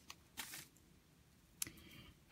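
Faint handling noises of hands on a beading work surface: a brief soft rustle about half a second in and a small click near the end, as the peyote-stitch beadwork is picked up.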